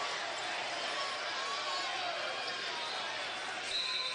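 Arena crowd chatter: a steady murmur of many voices in the stands, with no single voice or impact standing out.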